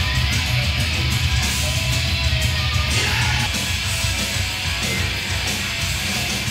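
Loud background rock music with guitar, running steadily.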